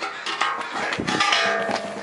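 Music with several held notes sounding together, and a dull knock about a second in.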